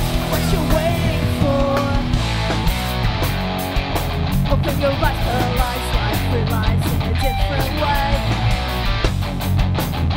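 Live rock band playing loudly: electric guitars, bass guitar and drums.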